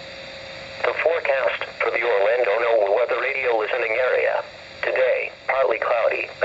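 NOAA Weather Radio broadcast voice reading the forecast, heard through a weather alert radio's small speaker. A brief gap of static hiss comes first, then the speech starts just under a second in, with a short pause about four and a half seconds in.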